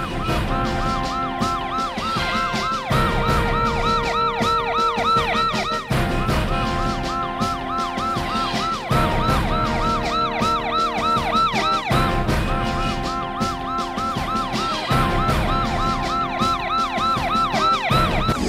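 Police siren sound effect with a fast rising-and-falling wail, laid over background music of steady held chords with a low beat about every three seconds.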